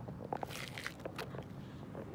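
A quick run of small clicks and rustles, most of them between about half a second and a second and a half in, over a low steady background hum.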